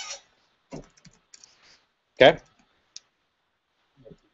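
A few scattered key clicks on a computer keyboard.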